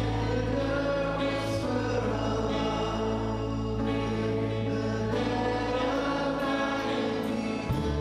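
Live worship band: several voices singing together over held bass notes, drums and piano, with a few cymbal strokes and a change of bass note near the end.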